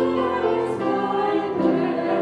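Women's voices singing a worship song over instrumental accompaniment, holding long notes that change about every second.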